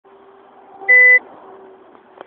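A single short electronic beep, a steady tone about a second in, over a faint steady hum.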